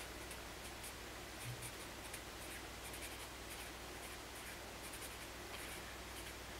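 Pen writing on paper: a run of short, faint scratching strokes as words are written, over a steady low hum.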